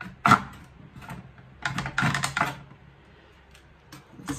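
Hand saw cutting a thin wooden strip in a plastic mitre box, in a few short, halting strokes: one about a third of a second in, then a quick run of strokes around the middle.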